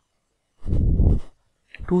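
A man's breath close to the microphone, a short noisy puff lasting under a second in a pause of his narration, before he speaks again near the end.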